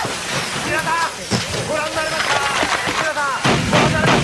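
Speech: voices talking over a steady background hiss.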